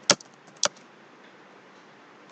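Computer keyboard being typed on, with two sharp keystrokes about half a second apart near the start and a few fainter key ticks over a low hiss.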